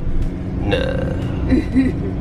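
Van engine droning steadily, heard from inside the cabin while driving, with a voice saying a drawn-out "no" about a second in.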